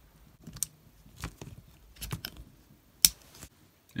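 Small metallic clicks from a North American Arms Mini Master .22 Magnum pocket revolver being reassembled, its cylinder pin pushed back into the cylinder, with a sharper, louder click about three seconds in.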